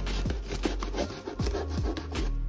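Folding knife sawing through the side of a corrugated cardboard box, an irregular rasping scrape as the blade works around a cut-out hole.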